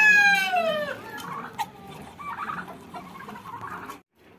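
A rooster crowing: the end of a long crow falls in pitch and stops about a second in. Quieter chicken clucking follows.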